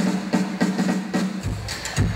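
Live country band playing: a run of plucked string notes at an even rhythm of about three a second, joined about one and a half seconds in by deep kick drum beats from the drum kit.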